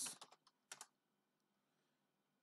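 Computer keyboard keystrokes: a quick run of key presses within the first half second, then two more just before one second in.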